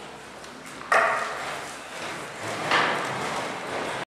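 People getting up from their chairs at a table: a sudden loud burst of movement noise about a second in that fades away, then a second, swelling one near three seconds.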